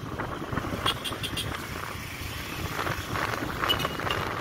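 Motorcycle riding along a city street: its engine running with road and wind noise over the microphone. A few short clicks about a second in and a brief high tone near the end.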